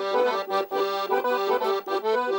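Accordion playing a Thracian folk dance tune in quick runs of notes, with two short breaks in the phrasing.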